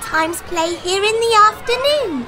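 A high-pitched, child-like voice from the coursebook's audio recording saying the English line "We sometimes play here in the afternoon" in a lively, sing-song way.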